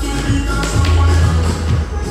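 Loud dancehall music with a heavy bass line and a percussive beat, a long bass note held through the middle.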